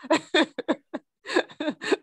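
A woman laughing in a series of short, broken bursts.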